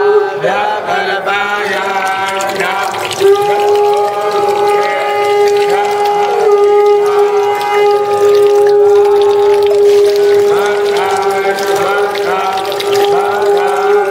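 A group of voices chanting together in devotional style over a steady tone held at one pitch for many seconds, a drone beneath the voices.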